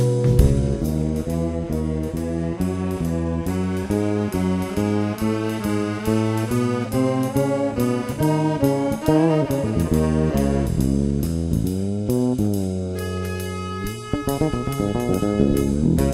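Jazz trio music: a tenor saxophone plays a melodic line of held and moving notes over bass and a drum kit.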